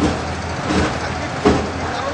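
A vehicle engine running steadily, a constant low rumble, under street noise with faint voices.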